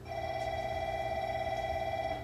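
An electronic departure bell rings as one steady, warbling tone for about two seconds and then stops, signalling that the train is about to leave. A steady low hum from the stationary train runs underneath.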